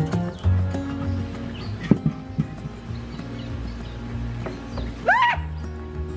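Background music, and about five seconds in a woman's short, high scream that rises and falls, set off by a lizard.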